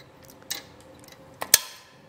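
Two clicks from the Thule Hitching Post Pro bike rack's pin and clip as they are put back through the folded-down arms: a faint one about half a second in, then a sharp one about a second later.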